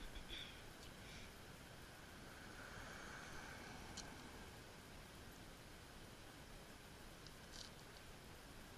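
Near silence: faint outdoor background with a few soft, brief clicks.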